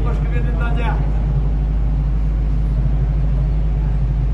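Steady low drone of construction machinery at the tunnel works, with a person's voice briefly in the first second.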